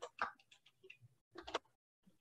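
Faint, irregular clicking of computer keys, a few light clicks a second, with the sharpest about a quarter second in and again about three quarters of the way through.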